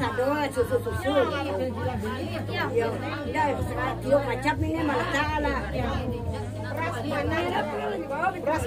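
Several people chatter and talk over one another in a room, over a steady low hum.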